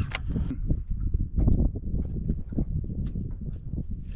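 Wind buffeting the microphone as an irregular low rumble, with a few light clicks from a baitcasting reel being cranked.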